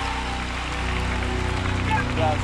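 Church band holding steady chords under a congregation's applause and cheering.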